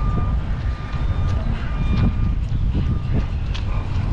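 Steady low rumble of wind buffeting the microphone, with a few faint clicks.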